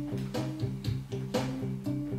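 Clean electric guitar, a Fender Stratocaster, picking triad chord shapes note by note, about four evenly spaced notes a second, each ringing into the next.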